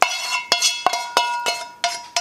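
A knife knocking and scraping against the inside of a frying pan, about three sharp clinks a second, the pan ringing after each strike. It is scraping the last of the sautéed asparagus out into the other pan.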